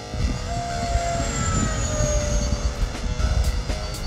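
Electric ducted-fan whine of a radio-controlled F-15 Eagle jet model in flight, gliding slowly down in pitch, with heavy wind buffeting on the onboard camera.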